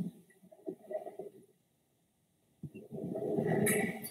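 A man's faint mouth noises in the first second and a half, then, after a short silence, a man clearing his throat near the end.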